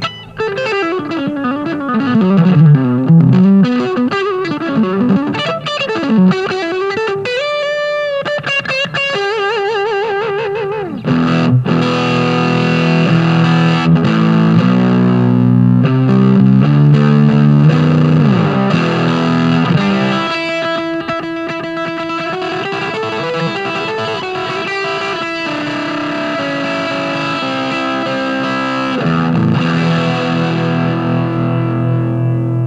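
Electric guitar played through a ToadWorks Fat City Dual Overdrive pedal, with overdriven single-note lead lines and wavering bent, vibratoed notes. From about eleven seconds in it turns louder and fuller, into distorted chords and riffs.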